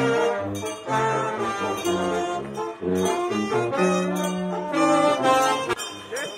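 Brass band music playing, with a steady low bass line under brighter horn notes; it cuts off abruptly just before the end.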